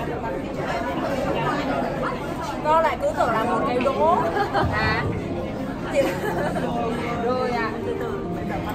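Overlapping chatter of several people talking at once, with no single voice standing out.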